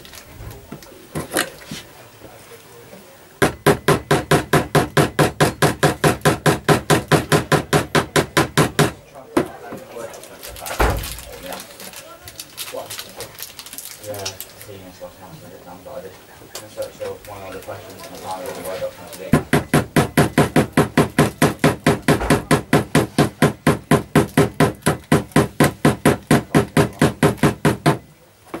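A small hammer tapping steel track pins through model railway track into a cork underlay: two long runs of light, quick, even taps, about six a second, one starting a few seconds in and one filling the last third.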